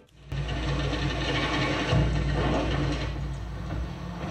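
Sound effects from a historical naval-battle film's soundtrack: a steady deep rumble with a rushing noise over it, swelling about two seconds in.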